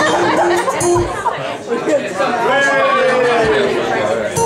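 Audience chatter, with single acoustic guitar notes ringing under it.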